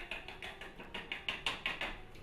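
A packet of agar powder being emptied into a pot: a quick run of small, crisp clicks and crackles, several a second, growing stronger in the second half.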